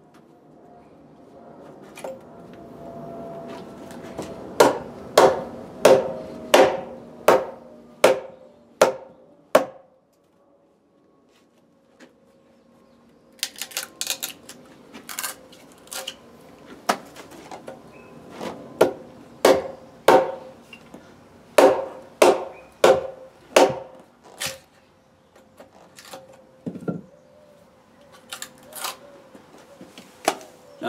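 Wooden mallet striking the handle of a chisel driven into a fresh-cut log to chop out wood between saw cuts. The knocks come about one and a half a second, stop for a few seconds about ten seconds in, then resume less evenly.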